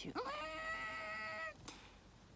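A woman imitating a car with her voice while it is pushed to breaking point. Her pitch rises quickly, then she holds one high, steady tone for about a second and a half before cutting off.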